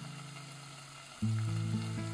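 Finely chopped vegetables sizzling as they sauté in oil in a saucepan. Background music with steady notes comes back in just over a second in.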